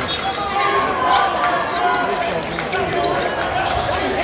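Basketball game sounds in a gym: the ball bouncing on the hardwood floor amid overlapping crowd voices and shouting.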